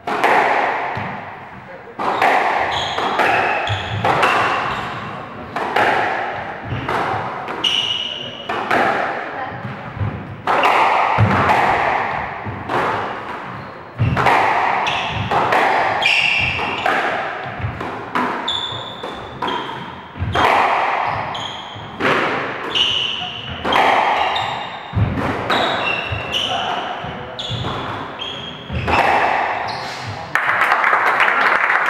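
Squash rally: the ball is struck by rackets and smacks off the court walls about once a second, each hit ringing in the hall. Short high squeaks sound between the hits.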